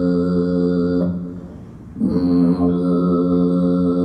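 A woman's Tuvan throat singing: one steady low drone with a high overtone held above it. The sound dips for a breath about a second in and resumes strongly about two seconds in. It is heard as a film soundtrack played in a gallery room.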